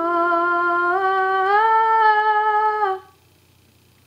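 A girl's voice holding one long sung note with no guitar strumming under it. The note steps up in pitch about halfway through and stops about three seconds in.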